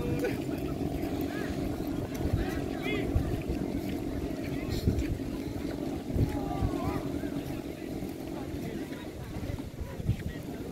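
Steady droning rumble of wind buffeting the microphone and a crowd of voices, with scattered distant shouts.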